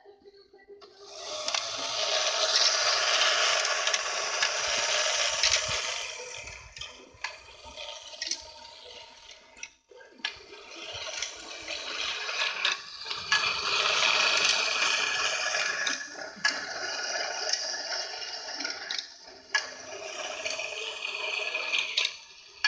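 Technofix Car Elevator 266 tin toy running: its drive mechanism whirring in long stretches while small tin cars roll and rattle along the tin ramps, with sharp clicks and clatters as the elevator arm lifts and releases them.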